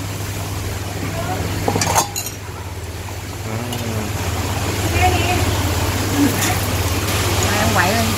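Chicken hot pot broth boiling in a steel pot on a tabletop gas burner, a steady low bubbling rumble. A single clink of a utensil on the dishes comes about two seconds in.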